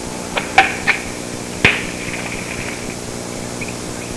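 Four sharp knocks in the first two seconds, the last and loudest about one and a half seconds in, followed by a brief ring, over a faint steady hum.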